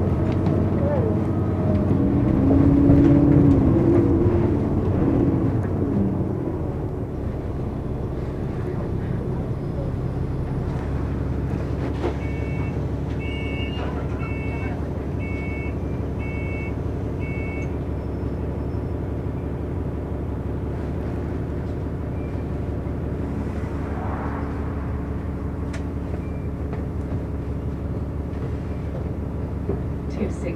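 Interior drone of a London double-decker bus, with a steady engine note under road noise, louder for the first six seconds and then settling to a flatter hum. About halfway through, a run of about half a dozen short, high electronic beeps sounds, each a paired tone.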